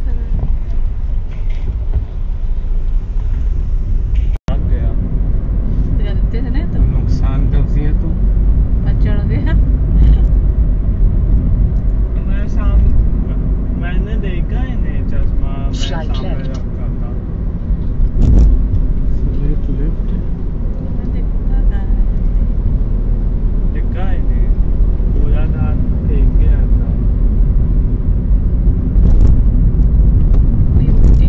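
Steady low road and engine rumble heard from inside a car cruising at highway speed. The sound cuts out for a moment about four seconds in.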